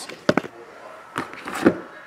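A few quick, sharp clicks about a quarter second in, then two softer knocks later on: a die and sealed card boxes being handled on a padded tabletop.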